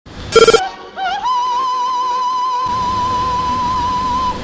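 Operatic singing: a short loud note near the start, then a voice sliding up into one long high note held steady with a slight vibrato.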